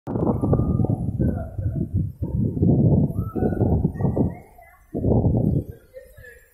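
Rumbling, crackling noise on a phone's microphone from handling or wind buffeting, coming in loud, irregular bursts with short gaps, with faint voices behind it.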